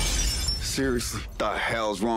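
A large shop-front glass window smashed with a baseball bat: a sudden crash of shattering glass that dies away within the first second, followed by a man's voice.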